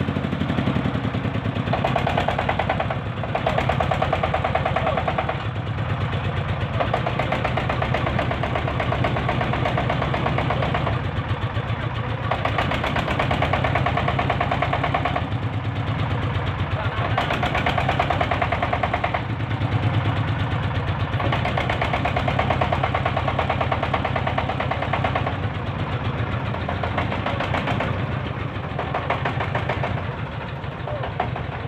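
Single-cylinder diesel engine of a homemade ledok dump tractor running with a fast, knocking chug, swelling louder and easing back every few seconds as the throttle is worked.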